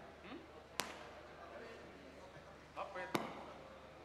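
Two sharp clicks about two and a half seconds apart, the second the louder, over a low steady hum from the stage amplification, with faint murmured voices.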